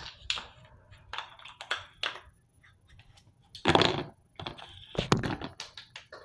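Close handling noises from hands and small objects at a countertop: a string of light taps and clicks, a louder rubbing thump about four seconds in, and two sharp clicks near the end.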